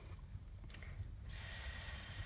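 A woman's drawn-out hissing 'sss', the s sound at the start of 'skipped' sounded out, lasting about a second and starting a little after halfway. Before it there is only faint room noise.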